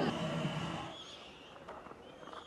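A man's voice trails off in the first moment. After that there is only faint, even background ambience from the cricket ground, with no distinct event.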